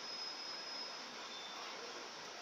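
Steady low hiss of room tone with no clear event, and a faint thin high whine during about the first second.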